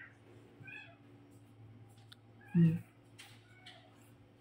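An animal making several short, high-pitched calls, each rising and falling, about a second apart.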